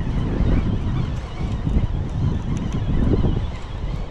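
Wind buffeting the microphone: a steady, low, gusty rumble with no clear pitch.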